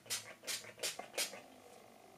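Pump-mist bottle of Mario Badescu facial spray spritzed four times in quick succession, each a short hiss, as a setting spray over makeup.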